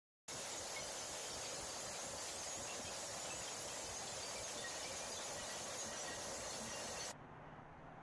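A steady, even hiss with no rhythm or impacts, cutting off suddenly about seven seconds in and leaving only a faint low hum.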